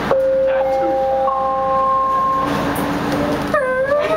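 Canada Line train's electric traction motors. Steady high tones join one after another and stop after about two seconds. About three and a half seconds in, a rising whine begins as the train starts to pull away.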